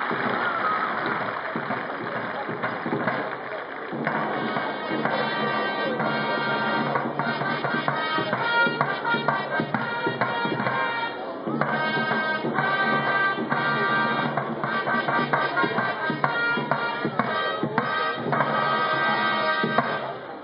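Military band music, sustained brass-like chords over a regular beat, coming in about four seconds in over the noise of the crowd.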